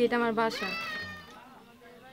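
A young girl's high-pitched voice speaking Bengali, ending on a drawn-out final syllable that trails off just over a second in, leaving only faint background sound.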